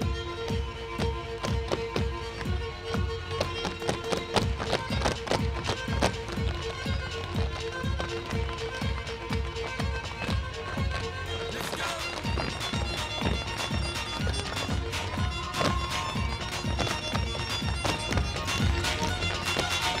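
Several tap dancers' shoes striking a wooden stage in quick, rhythmic clicks in unison, over loud recorded dance music.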